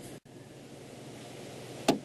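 Faint, steady outdoor bush ambience, a soft even hiss, cut by a brief gap just after the start and broken by a single sharp click near the end.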